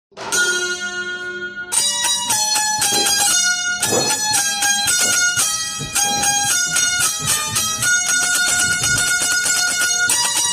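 Indian banjo (bulbul tarang) playing a melody, opening with a chord held for about a second and a half, then a steady run of short notes.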